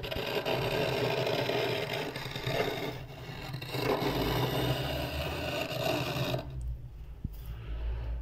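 A spoon scraping thick, flaky frost off a freezer wall: a continuous scrape that stops about six and a half seconds in.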